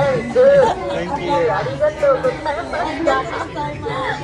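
People talking, with chatter that has no clear words.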